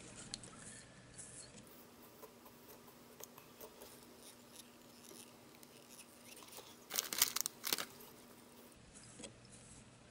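Fly tying at the vise: faint rustle and soft ticks of thread dubbed with synthetic scud dubbing being wrapped around the hook, with a short burst of louder scratchy clicks about seven seconds in.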